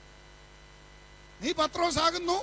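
Faint steady electrical hum from a PA system during a pause, then a man's voice through the microphone resumes about one and a half seconds in.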